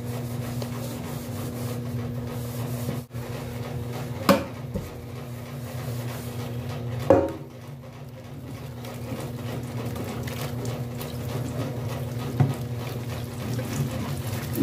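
Tap water running into and over an aluminium pan as it is rinsed in a stainless-steel sink, over a steady low hum. The pan knocks against the sink twice, about four and seven seconds in.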